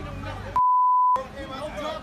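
A censor bleep: one steady high beep about half a second long that replaces the audio, with people's voices before and after it.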